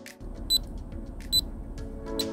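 Pulse oximeter's pulse beep, just switched on: two short high-pitched beeps a little under a second apart, one for each heartbeat.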